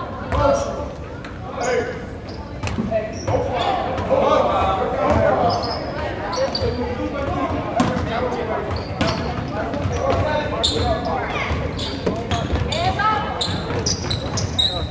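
A basketball bouncing on a hardwood gym floor in repeated sharp knocks, with indistinct voices of players and spectators, all echoing in a large gym.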